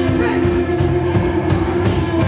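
Live rock band playing: a held electric-guitar drone over a steady drum rhythm.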